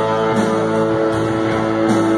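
A live rock band playing electric guitars, bass, keyboard and drums, with one strong note held for over a second.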